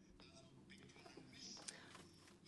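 Near silence, with faint, low speech in the background.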